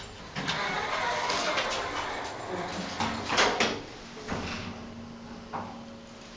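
Vintage Dover elevator starting a run after its floor button is pressed: the doors slide shut with a rumble, a louder clunk follows about three and a half seconds in, and a steady low hum sets in as the car begins to move.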